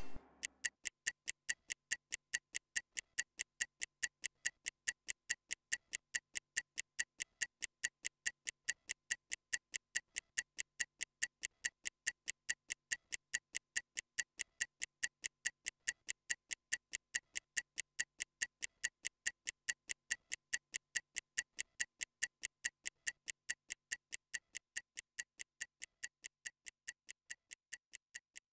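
Stopwatch ticking sound effect: a fast, even run of crisp, high ticks, several a second, timing a 30-second rest interval. The ticks grow slightly fainter near the end.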